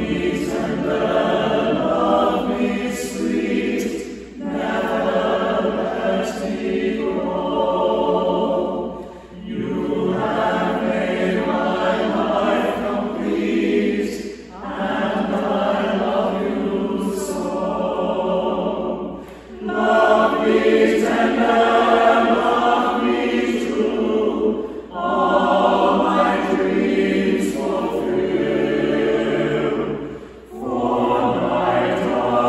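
Mixed church choir of men's and women's voices singing, in phrases of about five seconds, each followed by a brief break.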